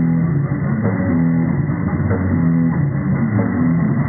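Live rock band playing an instrumental passage: electric guitar riff over drum kit and bass guitar, no vocals. The riff repeats about every second.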